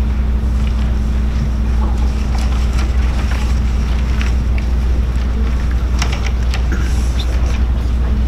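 A steady low hum dominates, with faint scattered rustles and a few small clicks over it.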